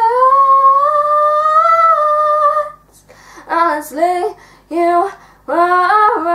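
A young girl singing unaccompanied: one long note that slides upward and holds for about two and a half seconds, then a few short sung syllables after a brief pause.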